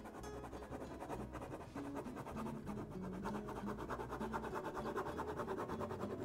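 Pen nib scratching across paper in rapid back-and-forth hatching strokes, several a second, as a drawing is shaded. Soft background music with slowly changing notes plays underneath.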